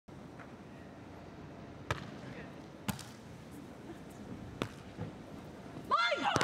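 Hands striking a beach volleyball during a rally: three sharp hits, the first two about a second apart and the third after a longer gap. They are heard over a faint steady background of crowd and venue noise.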